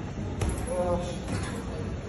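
A single punch landing on a heavy punching bag, a sharp thud about half a second in, with a man's voice speaking over it.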